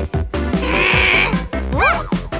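Cartoon background music with a character's wavering, whining cry lasting about a second in the middle, then a short voice-like sound that rises and falls in pitch near the end.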